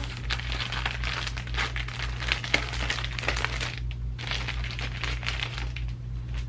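Clear plastic packaging bag crinkling and rustling as it is handled and opened to take out the garment, in irregular spells with a short lull about four seconds in.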